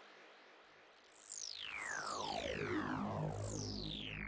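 Serum wavetable-synth sweep effect, played solo: a noisy tail fades out, then from about a second in several layered tones glide steeply down in pitch from very high to low over a swelling low rumble, stopping abruptly right at the end.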